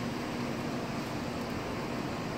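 Steady room noise: an even hiss with no distinct events.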